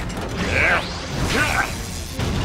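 Cartoon mechanical sound effects, whirring and ratcheting, with two short sweeping sounds over a low rumble and background music.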